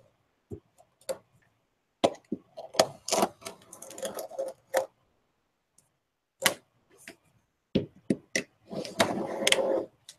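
Scattered clicks and knocks of a metal ruler being set down and shifted on veneer over a cutting mat, with a longer stretch of handling noise near the end.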